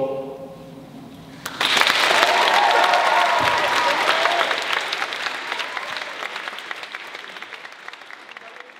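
The last sung chord of a men's a cappella group dies away in a reverberant hall. About a second and a half in, the audience breaks into applause with a few shouts, and the applause fades gradually toward the end.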